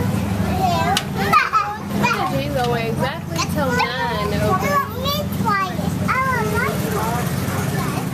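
A young boy laughing and squealing in high, wavering, sing-song pitches, over a steady low hum.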